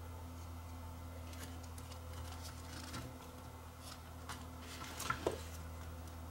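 Faint clicks and taps of a camcorder's circuit board and plastic chassis being handled, with a sharper click about five seconds in, over a steady low electrical hum.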